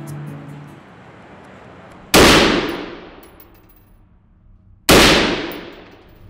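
Two single gunshots about three seconds apart, each dying away slowly in a long echo. Background music fades out in the first second.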